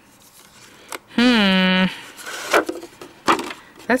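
A woman's brief wordless vocal sound, one held note of under a second, about a second in, with a few soft taps and rubs of cardstock being handled and laid down on a cutting mat; a spoken word begins at the very end.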